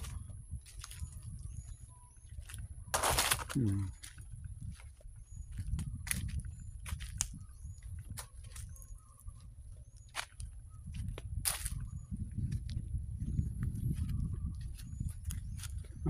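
Wind rumbling on the microphone and footsteps through dry fallen teak leaves and grass, with a loud leafy crackle about three seconds in and several sharp twig-like snaps. Over it a bird gives a short high chirp about once a second.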